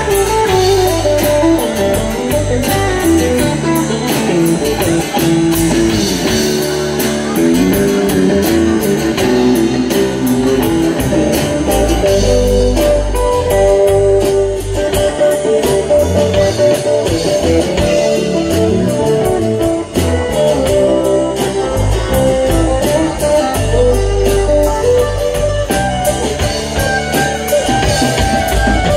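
Live band playing an instrumental break of a blues-tinged Southern rock song: electric guitar lines over a strummed acoustic guitar, with bass and drums keeping a steady beat.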